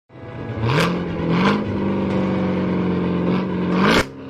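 Car engine revving up and holding at high revs, then rising again at the end, with short swishing whooshes about a second in and just before the end: an engine-and-whoosh intro sound effect.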